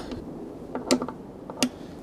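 Click-type torque wrench on a T27 Torx bit clicking as the air cleaner cover screws reach their set torque. A sharp double click comes about a second in, and another about half a second later.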